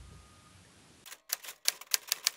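Typewriter keystrokes sound effect: after a second of fading quiet, a quick run of sharp key clicks starts about a second in, several a second.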